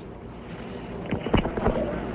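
Steady hiss and rumble of an old launch-countdown broadcast recording between announcer calls, slowly growing louder, with a few brief, faint voice fragments about a second in.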